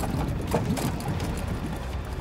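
Water bubbling and sloshing inside a sealed clear box around a submerged head, with many short bubbling blips over a steady low rumble.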